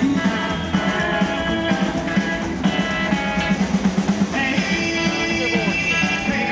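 Rockabilly band playing live, a full band song with a fast, steady beat.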